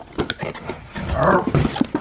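Light rustling of a cardboard box, then from about a second in a dog barking loudly. The owner takes the barking for the sign that the postie has come to the door.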